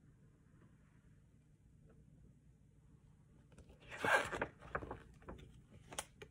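Near silence, then about four seconds in a short rustle as the paper pages of a picture book are turned, followed by a few light clicks of the book being handled.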